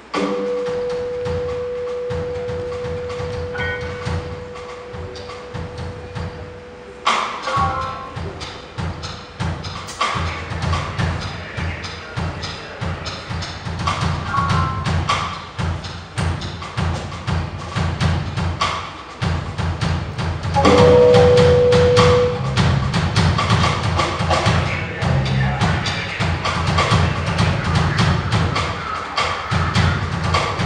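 Live jazz group of electric keyboard, electric bass and drum kit starting a piece: a bass line under one long held note, with the drums and fuller band coming in about seven seconds in.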